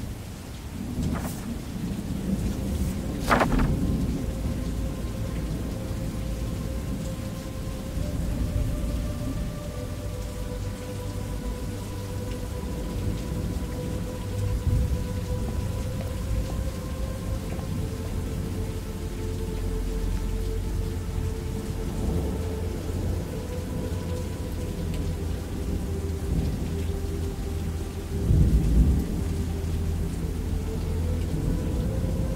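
Thunderstorm with steady rain and continuous low rolling thunder, a sharp thunder crack about three seconds in and a louder rumble near the end.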